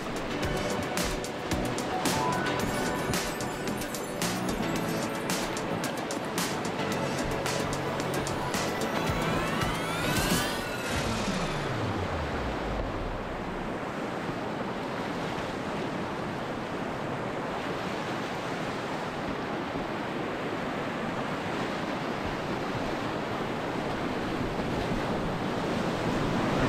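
Background music with percussion, ending in a rising and falling sweep about eleven seconds in. After that comes the steady rush of whitewater as a kayak runs down a rocky rapid.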